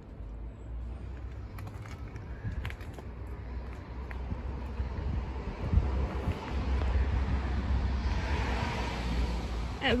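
Outdoor urban street sound: road traffic over a steady low rumble, with a vehicle passing that swells louder in the second half.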